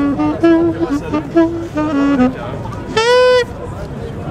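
Saxophone played live: a phrase of short notes in the first two seconds, then one loud, higher held note about three seconds in that breaks off. Voices of a street crowd underneath.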